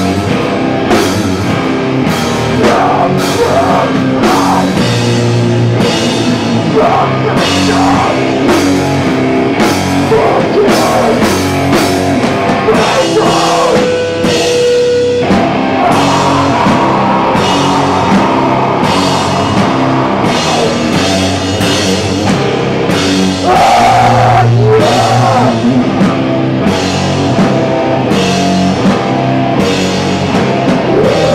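Hardcore punk band playing live at full volume: distorted electric guitar and bass over a pounding drum kit, with steady, regular drum hits and crashing cymbals.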